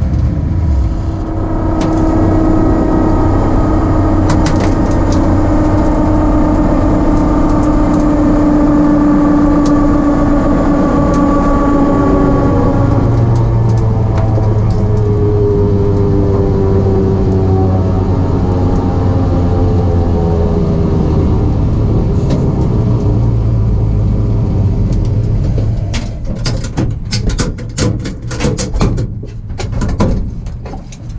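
Pro Mod 1967 Mustang's race engine running at low speed as the car rolls along, heard from inside the caged cockpit. The engine note drifts slowly in pitch. Near the end the sound gets quieter and uneven, with a run of sharp clicks and rattles.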